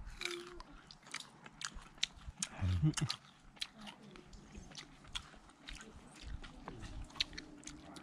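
A person biting into and chewing food close to the microphone: irregular short, sharp crunching clicks throughout, interrupted by a few spoken words about three seconds in.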